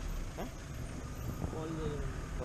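Open safari jeep's engine running as it drives along a dirt track, a steady low rumble of motor and road noise, with a person's voice near the end.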